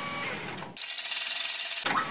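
Edited transition sound effect over the title cards: a dense, even texture with a faint steady tone, thinning to a high hiss for about a second in the middle, then the same texture returning.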